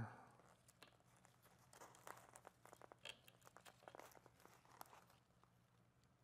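Faint crinkling and light crackles of hands working a staghorn fern against its wooden mounting board over newspaper, over a low steady hum.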